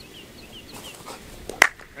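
A small bird chirping in short, quick, falling notes, about five in the first second. A single sharp crack about one and a half seconds in is the loudest sound.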